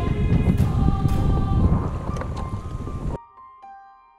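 Gusty wind on the microphone and sea water around a fishing kayak, under background music with long held notes. About three seconds in, the wind and water cut off abruptly, leaving only the softer music.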